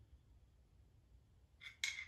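Quiet room tone, then two short metallic clicks about a second and a half in, from a dial indicator on a magnetic base being set against a bare engine block to measure crankshaft end play.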